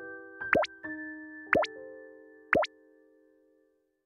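Three short rising pop sound effects about a second apart, each marking one of the three differences as it is circled on the answer screen, over held electric-piano notes that fade away near the end.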